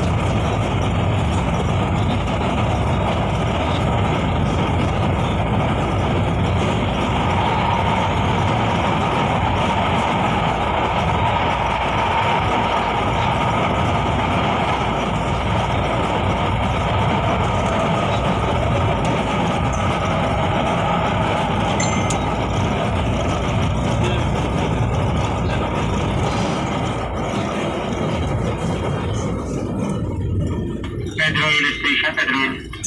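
Manila LRT Line 1 light-rail train running along its elevated track, heard from inside the carriage: a loud, steady running noise of wheels and motors with a few faint steady tones, easing off slightly near the end.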